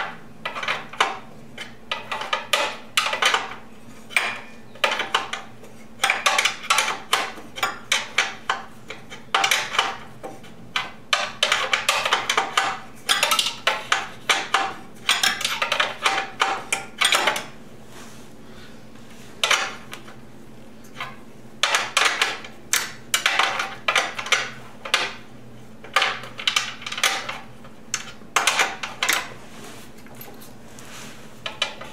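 Steel hand wrenches clicking and clinking in quick bursts of strokes as a nut is tightened down on a motorcycle's rear mounting bolt, with short pauses between bursts.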